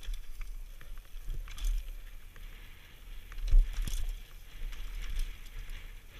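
Mountain bike descending a dirt and rocky trail, heard from a helmet-mounted camera: a steady low wind rumble on the microphone, tyres crunching over gravel and the bike rattling with many sharp clicks, and one loud knock about three and a half seconds in.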